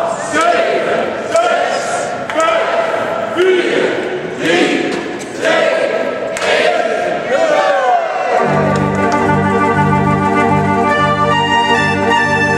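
A crowd counting down aloud together in Dutch, one number about every second. At about eight and a half seconds a restored Dutch fairground organ starts playing, with sustained chords over a strong bass.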